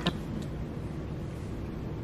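Steady low room hum with a short click at the start and a fainter one about half a second in.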